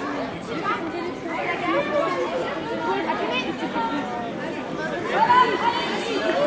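Chatter of many spectators, with overlapping voices talking at once.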